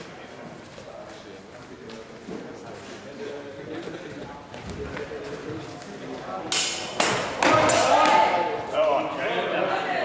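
Two sharp clashes of steel longsword blades, about half a second apart, with a brief ring, then loud voices calling out.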